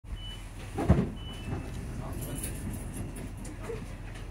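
Cabin sound of a ScotRail Class 334 electric multiple unit: a steady low hum from the train, with a loud thump about a second in and two short high beeps in the first second and a half.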